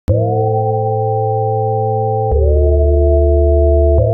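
Background music: sustained synthesizer chords over a deep bass, the chord changing about two seconds in.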